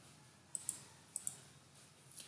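Faint computer mouse clicks in two quick pairs about half a second apart, advancing the presentation to the next slide.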